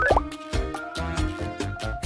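A short rising bloop sound effect right at the start, over upbeat background music with a steady beat.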